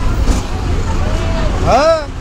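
Steady low rumble of a bus engine and road noise inside the passenger cabin of a bus, with a person's voice rising over it near the end.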